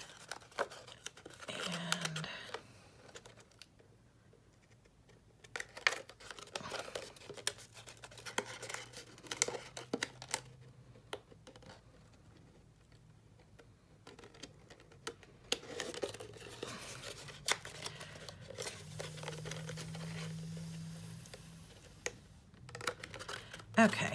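Cardstock being folded and pinched into tight box corners by hand: intermittent paper crinkling, rustling and small sharp clicks, with a couple of quieter pauses.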